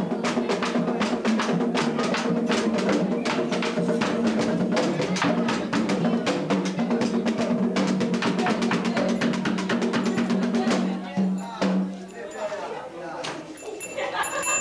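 Haitian Vodou ceremonial drumming with a fast, even beat under a chorus of singing voices. The drumming and singing stop about eleven seconds in, leaving quieter scattered crowd sounds.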